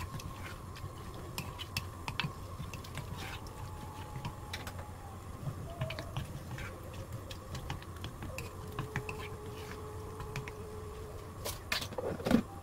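Wooden spoon stirring a thick stew of diced potatoes in an earthenware pot: soft, irregular scrapes and clicks of wood against the clay, over a low steady hum.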